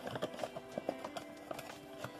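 Cardboard box of trading card packs being opened by hand: irregular clicks and taps of the cardboard flaps, over quiet background music.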